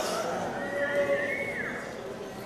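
A high, wavering voice held for about a second, climbing slightly and then dropping away steeply near the end.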